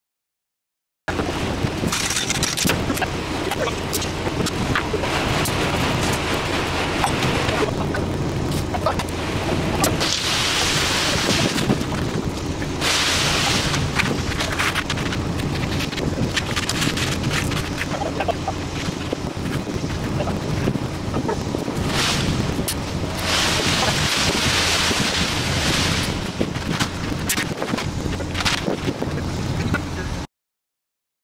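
Concrete mixer truck running steadily under the hiss and scrape of wet concrete being poured and raked, with several stretches of louder hiss. The sound starts abruptly about a second in.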